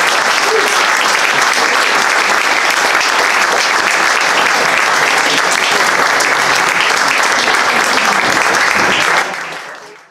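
A small pub audience applauding steadily at the end of a song, fading out near the end.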